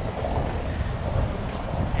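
Steady low rumble of outdoor city street noise, with wind on the microphone.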